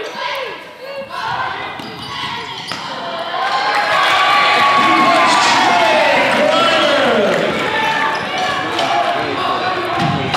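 Game sound of high-school basketball in a large gym: a basketball bouncing on the hardwood and players moving. The spectators' voices swell about four seconds in and stay loud for several seconds as a fast break goes up the floor.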